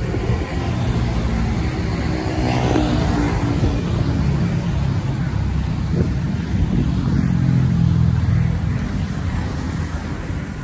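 An engine running steadily, rising in loudness for a stretch about seven to eight seconds in.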